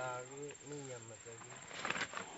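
A man's voice drawing out a word and trailing off over about the first second and a half, then faint background with a few soft clicks near the end.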